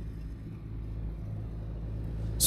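Road traffic on a highway: a vehicle's engine and tyre rumble, growing gradually louder.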